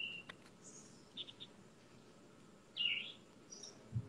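Birds chirping faintly: a short call at the start, a quick run of three chirps about a second in, and a louder call near the end.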